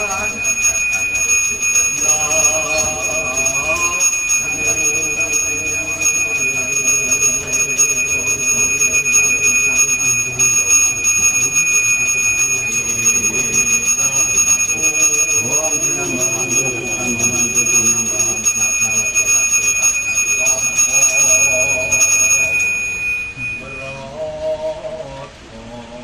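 A Hindu priest's hand bell (genta) rung continuously in a steady ringing that stops about a second before the end, with a voice chanting along beneath it.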